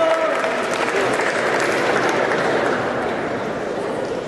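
Audience applauding steadily, easing off slightly toward the end.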